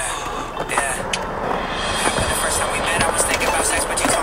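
A hip hop track over the sound of a skateboard rolling on concrete, with a couple of sharp knocks from the board.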